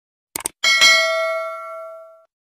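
Subscribe-animation sound effect: a quick mouse click, then a bright notification-bell ding struck twice in quick succession that rings on and fades away over about a second and a half.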